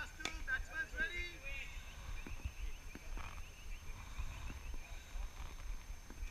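Faint distant voices of players, with wind rumbling on the microphone and a light knock just after the start.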